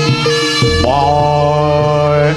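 Live Javanese jaranan ensemble music. Evenly repeated pitched gong-chime strokes play first. Just over half a second in, a long held reedy note, typical of the slompret shawm, enters over a deep low tone.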